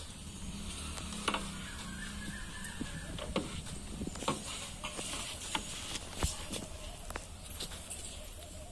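Cloth wiping and rubbing over a scooter's plastic body and seat, with scattered light knocks and taps against a low steady hum.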